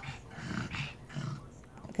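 A pug making a few soft, short snuffling sounds through its nose and mouth as it licks and noses at a child's face.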